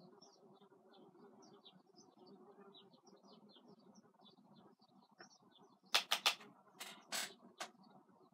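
Faint chirping of small birds throughout, over a low steady hum. About six seconds in, a few sharp clicks come in quick succession, the loudest sounds here, with one more just before the end.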